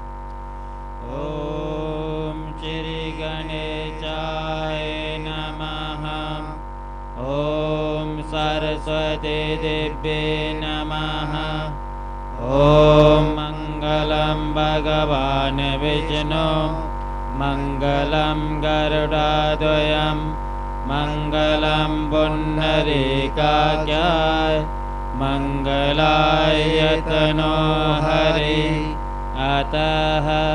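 Hindu mantra chanted to a melody in phrases with short breaths between them, over a steady hum. The chanting is briefly louder a little before halfway through.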